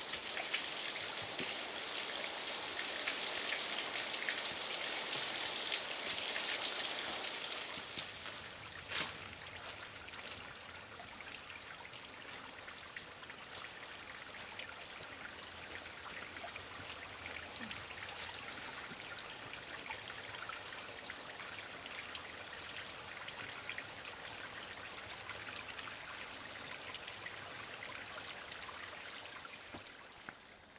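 A small waterfall pouring off a rock overhang and splashing below, a steady hiss that drops about eight seconds in to a quieter trickle of water running over wet rock ledges. There is a single tap about nine seconds in.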